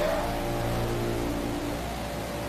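Film soundtrack playing a low steady drone of held tones, easing off near the end.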